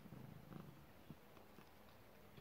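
Domestic cat purring faintly, a low pulsing rumble.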